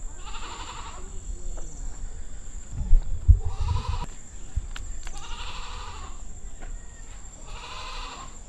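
An animal bleating four times, one call every couple of seconds, with a few low thuds near the middle.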